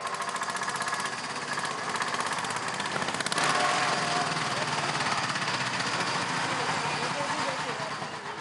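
Mahindra three-wheeler tempo's engine running steadily with a rapid, even rattling chug as it drives along.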